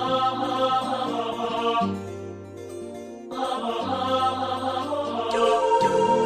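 Instrumental MIDI arrangement of a pop ballad: a sustained, voice-like synthesized lead melody in two phrases over a steady accompaniment of sampled instruments.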